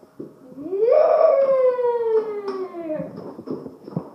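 A long howl, about two and a half seconds, that rises quickly and then slides slowly down in pitch.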